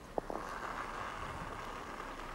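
Curling arena ambience: one short sharp knock just after the start, then a steady even hum.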